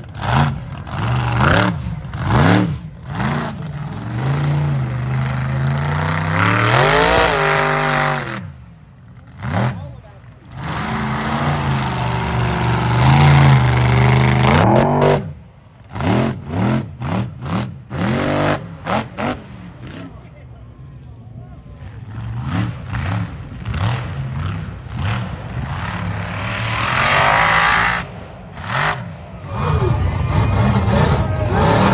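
Mud truck's big engine revving hard over and over, its pitch sweeping up and down as the tyres spin and throw dirt. Several short, sudden gaps break the sound.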